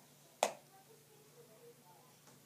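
A single sharp click about half a second in, dying away quickly: a letter card being set down on a table.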